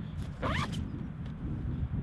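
A zip on a Lowepro Whistler BP 450 AW camera backpack pulled once, briefly, about half a second in.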